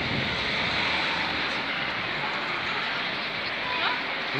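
Steady street noise by a busy town road: a continuous hiss of traffic, with a brief rising whistle-like sound near the end.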